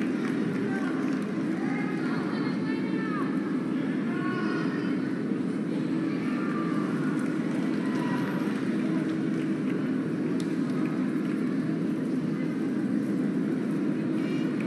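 Steady murmur of a large audience in a hall, many voices blended together with a few scattered ones standing out faintly.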